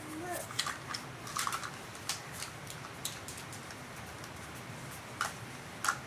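Scattered light clicks and rustles of things being handled, a few close together in the first second and a half and single ones later, with a voice trailing off at the start.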